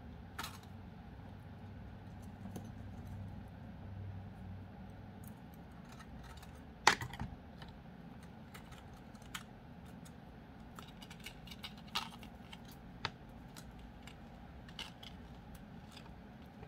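Faint, scattered light clicks and ticks of thin craft wire and seed beads knocking against a metal hoop as the wire is wrapped and tugged around its rim. The sharpest click comes about seven seconds in.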